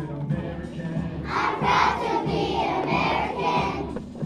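A group of young children singing together as a choir over recorded music, their voices growing loud about a second in and easing off just before the end.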